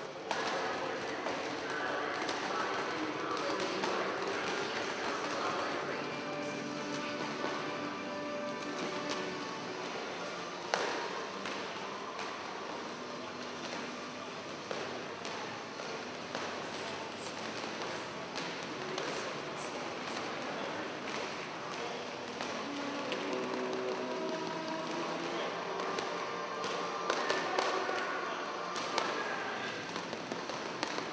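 Background music with boxing gloves slapping onto pads at irregular moments; one hit about eleven seconds in stands out, and several more come close together near the end. Indistinct voices sound underneath.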